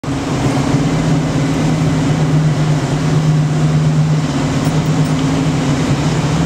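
Engine of a Jeep-drawn cave tour tram running steadily, heard from aboard the tram as it moves: a constant low hum over an even rumble.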